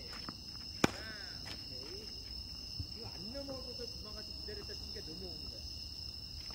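A tennis ball is struck once with a racket, a single sharp crack about a second in, with a couple of lighter knocks after it. Under it runs a steady, high-pitched drone of insects.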